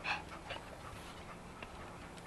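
Yellow Labrador retriever breathing hard close by: a short loud breath right at the start, then fainter ones about half a second and a second in.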